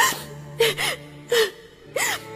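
A woman sobbing: four short catching gasps, each with a brief rising-and-falling whimper, about every two-thirds of a second. A low, steady music note is held beneath.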